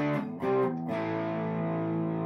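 Electric guitar played through a tweed 5E3 Deluxe-clone tube amp. A held chord gives way to a few quickly picked notes, then a new chord rings out from about a second in.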